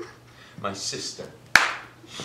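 A brief voice, then a single sharp smack about one and a half seconds in, dying away quickly with a little room echo.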